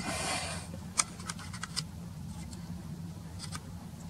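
Scattered light metallic clicks and taps, about eight over three seconds, from an open-end wrench working on a diesel injector line nut, over a faint steady low hum.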